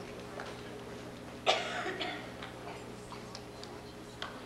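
Low, steady background of a large seated audience of schoolchildren in a gym, with faint stirrings and a steady hum. One short, sharp, noisy burst stands out about a second and a half in.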